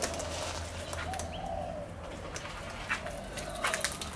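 Soft, low bird calls, a few rising-and-falling notes, with some sharp clicks near the end over a steady low hum.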